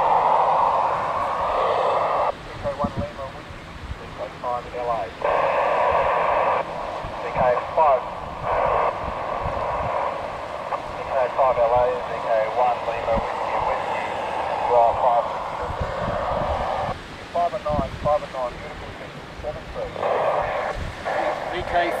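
Narrow-band FM receiver audio from a Yaesu FT-817 tuned to the AO91 amateur satellite's 2 m downlink. Fragments of other amateur stations' voices break in and out between stretches of hiss as the satellite signal fades.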